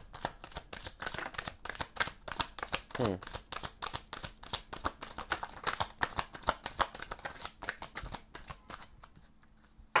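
A deck of tarot cards being shuffled by hand: a fast, continuous run of crisp card snaps and flicks that stops shortly before the end.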